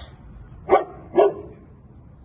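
A dog barking twice, two short loud barks about half a second apart.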